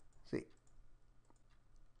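Faint, scattered mouse clicks as keys are pressed on an on-screen TI-84 Plus calculator emulator to open its distribution menu.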